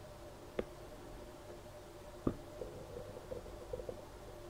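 Quiet small-room background with a faint steady hum, broken by two short sharp clicks, one about half a second in and one a little past two seconds, and a few fainter ticks after the second.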